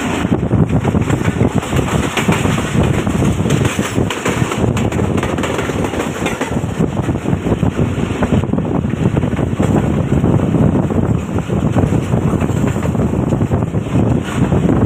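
Loud wind buffeting a microphone held out of a moving passenger train, over the running noise of the train on the track.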